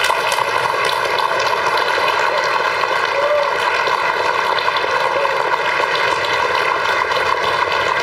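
Audience applauding steadily in a large hall, an even wash of many hands clapping.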